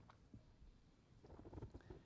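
Near silence: faint room tone with a low rumble in a pause between spoken phrases.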